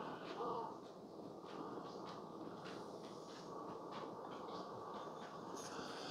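Keurig K-Café single-serve coffee maker brewing a strong espresso-style shot: a faint, steady hum of the machine with coffee trickling into a glass mug of frothed milk.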